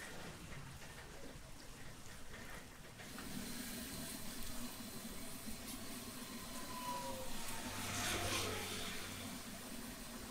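Hot oil sizzling and bubbling around a batch of sesame-coated dough balls deep-frying in a large wok, a steady hiss that grows a little louder about three seconds in and swells briefly near the end.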